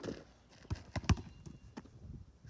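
A basketball knocks against the backboard, then drops and bounces several times on the asphalt court in sharp thuds, the loudest just past a second in.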